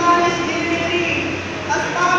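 A man's voice chanting in long, held notes, each sustained for about a second before moving to the next.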